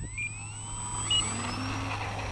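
Electric RC plane's brushless motor and propeller spooling up to full throttle for take-off, a high whine that rises in pitch over the first second and then holds steady.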